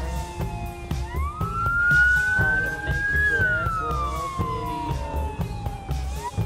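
A siren wailing: its pitch rises over about two seconds, then falls slowly, and starts to climb again near the end. Under it runs music with a steady beat and heavy bass.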